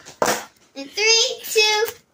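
A girl's voice: three short vocal sounds, too unclear to be taken down as words.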